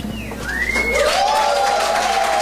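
Small audience reacting as the song ends: a rising whistle about half a second in, then a held cheer and scattered clapping.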